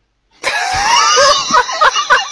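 A person's voice making a shrill, wavering cry about half a second in, which breaks into quick short pulses like laughter.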